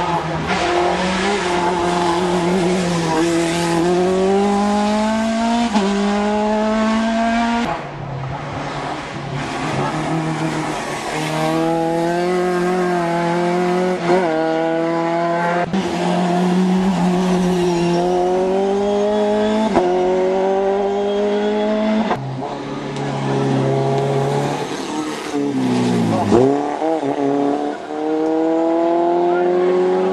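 Single-seater racing car's engine revving hard, its pitch climbing and dropping back again and again as it works up through the gears. About 26 s in the pitch swoops down and straight back up.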